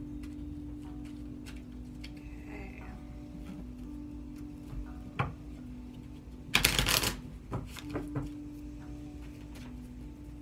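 A deck of oracle cards shuffled by hand: soft scattered card clicks, with one louder, rushing riffle of the deck's two halves about six and a half seconds in, followed by a few light taps as the cards are squared.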